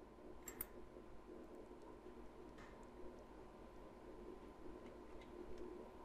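Faint computer mouse button clicks over near-silent room tone: a quick double click about half a second in, a softer single click about two and a half seconds in, then a few fainter ticks.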